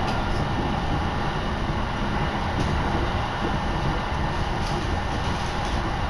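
Steady running noise of a Shin'etsu Line train in motion, heard from inside the passenger carriage: an even low rumble of wheels on the rails.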